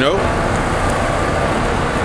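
Steady road traffic noise from cars on the street.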